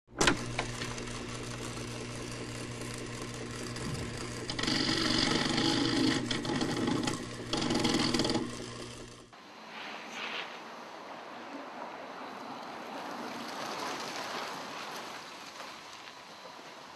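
Logo intro sound: a sharp hit followed by a steady, buzzing electronic drone that grows louder in the middle and cuts off suddenly about nine seconds in. It gives way to a quieter, even outdoor background hiss.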